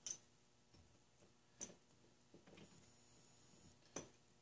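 Near silence broken by a few faint, scattered clicks of small metal fittings and hand tools being handled on a model steam engine during assembly.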